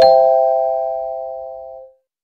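Two-note rising chime sound effect, struck once, a lower note then a higher one, ringing out and fading away over about two seconds.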